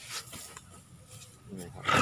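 Baby elephant giving a short, loud, noisy blast of breath close to the microphone near the end.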